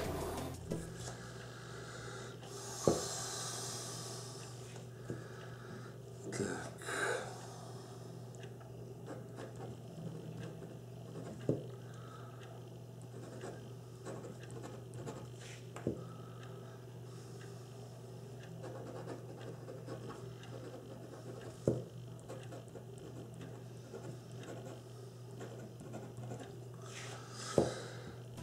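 Hero 9622 fountain pen with a very fine nib writing on paper: faint scratching of the nib as it forms letters, with a few short knocks scattered through.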